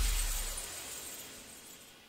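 The decaying tail of a cinematic impact sound effect for a logo reveal: a deep bass rumble and a glassy high shimmer fading away steadily.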